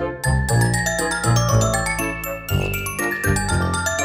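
Background music: a light tune of bell-like mallet notes over a bass line, in a quick, even rhythm.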